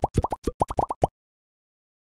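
Logo-animation sound effect: a quick run of about ten short plops, each rising in pitch like a bubble popping, stopping about a second in.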